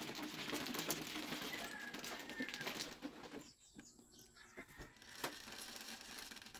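Plastic mahjong tiles clattering and rattling as they are swept into the centre opening of an automatic mahjong table, dying away about three seconds in to a few scattered clicks.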